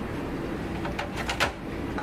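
Light knocks and scrapes of a motherboard being set down and shifted into place inside a PC case, with a few short clicks about a second in.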